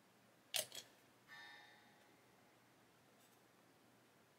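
Small handling clicks from a plastic model kit and its cement bottle: a sharp double click about half a second in, then a short squeaky rasp a second later and a faint tick near three seconds, with near silence between.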